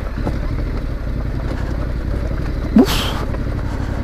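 Yamaha Ténéré adventure motorcycle's engine running at steady low revs on a delicate, steep loose-gravel descent.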